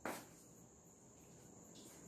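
Near silence: quiet room tone with a faint, steady high-pitched tone running throughout, and one short click right at the start.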